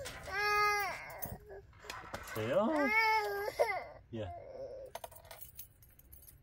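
A toddler's high-pitched vocal sounds: a short squeal near the start and a longer squeal that glides up and down in the middle, with a few light clicks and knocks in between.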